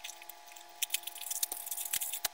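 Plastic packaging crinkling and crackling as a small mailer bag and the clear plastic wrap around a plush toy are torn and pulled open by hand, in a quick run of short rustles that grows busier from about the middle on. A faint steady hum sits underneath.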